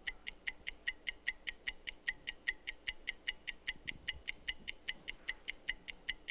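Game-show countdown timer sound effect: a rapid, even ticking at about five ticks a second, counting down the contestants' answer time.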